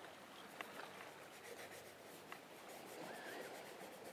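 Faint rubbing of a paintbrush dragging oil paint across a painting panel, with two light taps.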